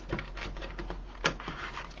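Ribbon and pipe cleaner being handled and twisted tight in a Bowdabra bow maker: light rustling with scattered small clicks and one sharper click about a second in.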